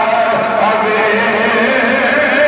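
A man's voice chanting into a microphone in long, held melodic notes with slow pitch bends, in a sung style of recitation rather than plain speech.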